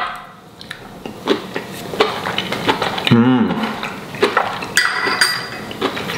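Chewing a bite of crispy fried chicken, with scattered crunching clicks and a short appreciative "mm" hum about three seconds in. A fork clinks against a small glass bowl near the end.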